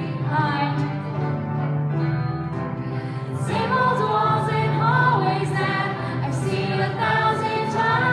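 Junior high school choir singing in many voices over a steady low accompaniment; the singing grows fuller and louder about three and a half seconds in.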